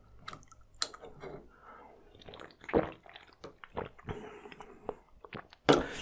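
Quiet close-up mouth sounds of eating and drinking: soft wet clicks, chewing and swallowing, with a drink can being handled and set down.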